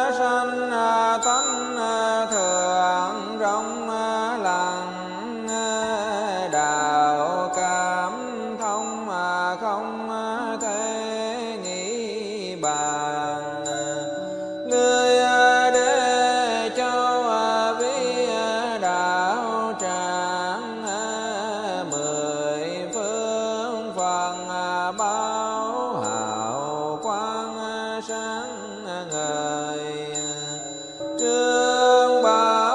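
Buddhist sutra chanting: a voice intoning a gliding melodic line over instrumental accompaniment with a steady held tone underneath.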